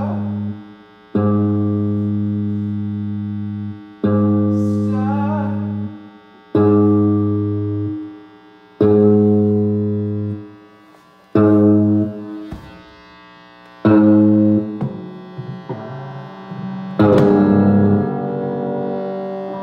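Music: a low note or chord played about every two and a half seconds, each held for about two seconds and then cut off short. A wavering higher tone rises over a couple of the notes, and the playing grows busier near the end.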